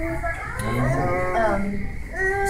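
A person's voice: a long, low, drawn-out "ummm" starting about half a second in.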